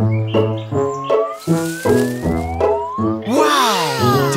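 Bouncy cartoon background music of short staccato notes, with a long rising whistle-like glide through the middle. In the last second a loud swooping, wavering sound cuts in.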